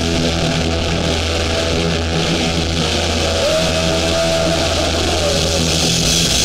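Live hardcore band with loud distorted electric guitar and bass holding low notes, and the cymbals dropping out until the end. A short rising guitar tone comes about halfway through.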